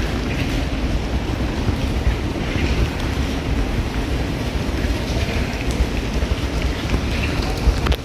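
Wind rumbling on the microphone over a steady hiss of rain, with no clear single event standing out.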